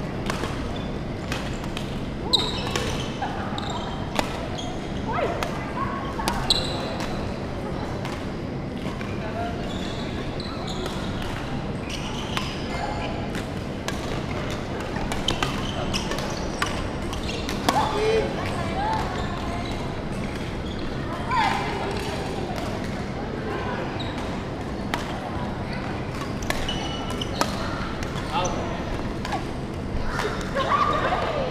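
Badminton rally: rackets hitting the shuttlecock in sharp irregular cracks, with players' footsteps and shoes on the wooden court floor and players' voices now and then, in a large sports hall.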